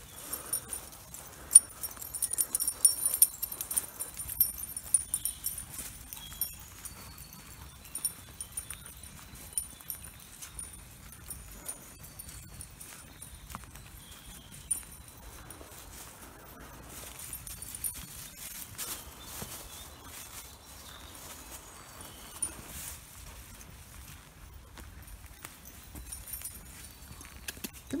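Footsteps and rustling of a person walking dogs on leads along a woodland path, with irregular clicks and knocks, busiest in the first few seconds.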